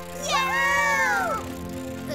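A high cartoon voice gives one drawn-out wordless cry that jumps up and then slides down in pitch for about a second, over steady background music.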